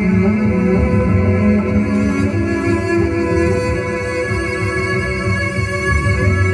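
Electric cello played with a bow, long sustained notes layered over looped cello parts in a steady, continuous texture.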